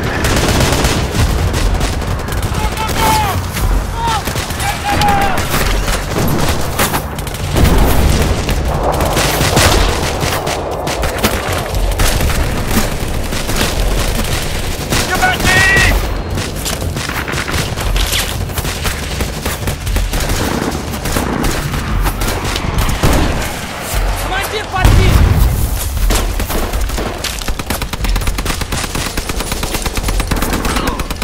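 Battle soundtrack of near-continuous automatic rifle and machine-gun fire, with heavy booms about a third of the way in and again near the end.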